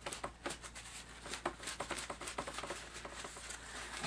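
A paper towel dabbed and pressed onto wet watercolour paper to lift paint out of the sky wash: faint, irregular soft taps and crinkles.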